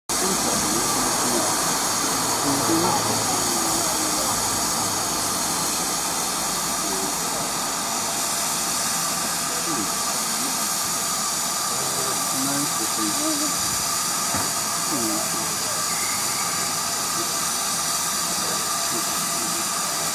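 Steam hissing steadily from GWR Hall class 4-6-0 steam locomotive 6960 Raveningham Hall as it stands ready to depart, with faint voices underneath.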